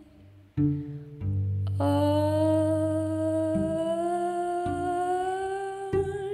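Music: a woman's voice hums one long held note that slowly rises in pitch, entering about two seconds in, over low cello notes that change about four times.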